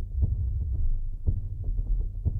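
A low throbbing hum with a few faint soft thumps.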